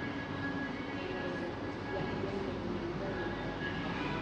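Coffee shop ambience: indistinct chatter of many voices and faint background music over a steady low rumble.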